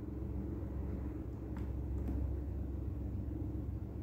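Steady low rumble of background noise with a faint hum, plus two faint ticks about halfway through.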